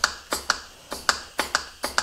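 Hand pump working the control port of a VAG switchable water pump in a bench test, moving the pump's shroud over its impeller: sharp clicks about twice a second, one per pump stroke.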